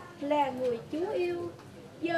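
A woman reciting a prayer aloud in a chanted, sing-song voice, with held notes. She pauses in the last half second.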